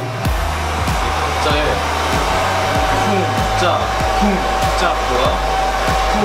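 Handheld hair dryer blowing steadily, a continuous airy rush with a constant low hum and a steady whining tone.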